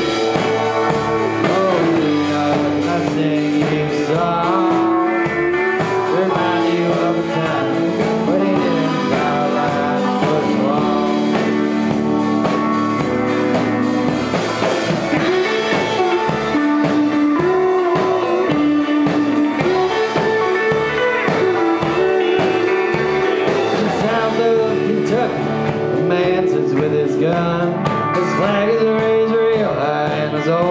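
A live band playing amplified music: electric guitars over a drum kit, steady and loud throughout.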